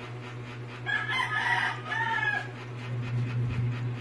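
A rooster crowing once, about a second in, a pitched call of about a second and a half that rises, holds and falls away at the end.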